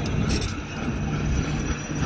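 Tracked heavy machine running, a steady low engine drone with rumble underneath.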